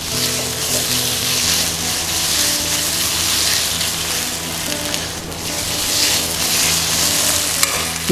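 Pork belly pieces in red curry paste sizzling in a hot nonstick wok as a silicone spatula stirs them, the sizzle swelling and easing about every two seconds.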